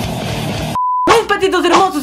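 Intro music cuts off a little under a second in, followed by a single short, pure beep tone lasting about a quarter of a second. A voice starts talking right after it.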